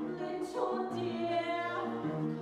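Musical-theatre singing by stage performers, with accompaniment from a live pit band. Held notes run without a break, over sustained low tones.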